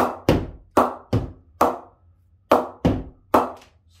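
A cricket ball bounced again and again off the face of a DSC Xlite 2.0 English willow cricket bat, unoiled and not yet knocked in. There are about nine sharp, ringing knocks, with a short pause a little before the middle. The clean ring shows the bat's ping, good across the whole blade.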